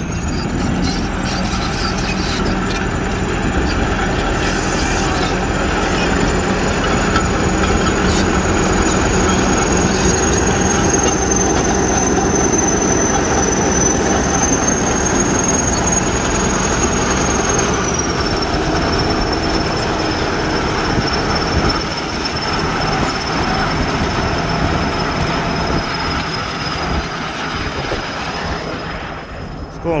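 Tracked earth-moving machine working: its diesel engine runs steadily under the clatter of the crawler tracks, with a continuous high-pitched squeal that drops a little in pitch about two-thirds of the way through.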